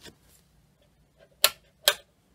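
Two sharp clicks about half a second apart: the rocker power-setting switches on a Warmlite oil-filled radiator being pressed.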